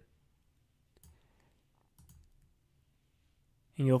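Two faint computer mouse clicks about a second apart.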